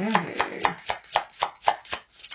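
A brand-new oracle card deck being shuffled by hand, the cards snapping in a steady rhythm of about four strokes a second.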